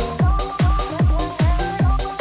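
Bounce (donk) dance music from a DJ mix: a kick drum on every beat, about two and a half beats a second, under repeating synth chords.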